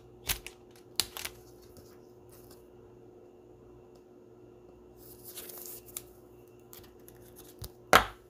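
A trading card being slid into a plastic penny sleeve and a rigid top loader: light plastic clicks and taps, a brief sliding rustle about five seconds in, and a sharper click at the end. A faint steady hum lies underneath.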